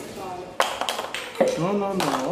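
Wooden puzzle pieces clattering as a toddler tosses them down, several sharp taps between about half a second and a second and a half in.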